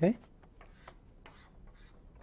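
Chalk drawing lines on a blackboard: a few short scraping strokes in quick succession.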